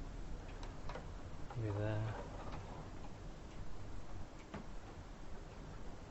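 A man's short hummed 'mm' about a second and a half in, with a few faint, irregular light ticks over a low steady room hum.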